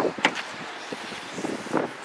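A car door being opened: a short click of the latch release, over a low steady hiss of wind.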